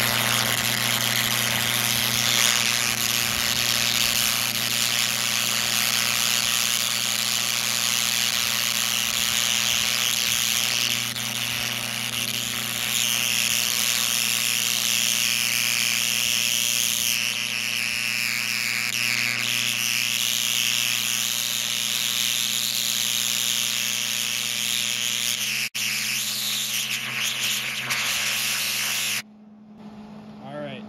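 Twin carbon arc torch burning between two carbon rods on AC current at about 50 amps: a loud, steady crackling hiss over a low hum. It drops out for an instant once, then cuts off suddenly near the end as the arc is broken.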